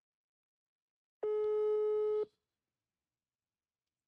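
Telephone ringback tone from a smartphone speaker held to a microphone: one steady beep about a second long, the ring heard while the call waits to be answered.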